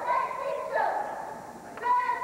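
A group of girls shouting a cheer in unison, in drawn-out, high-pitched calls that break off and start again about every half second to second.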